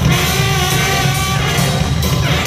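A live band playing: drums, guitar and horns, loud and steady, with heavy bass.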